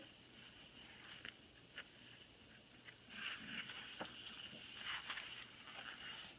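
Faint rustling and a few soft clicks of a paperback picture book being handled and its page turned, in a quiet room with a faint steady high-pitched whine.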